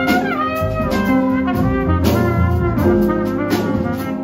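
Live jazz trumpet solo over electric archtop guitar, double bass and drum kit. Just after the start the trumpet line slides down in pitch.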